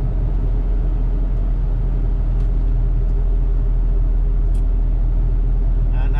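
Steady low drone of a moving truck heard from inside its cab: engine and road noise at an even cruising speed.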